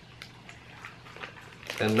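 A dog chewing a soft chicken strip treat: a few faint clicks, then a man's voice near the end.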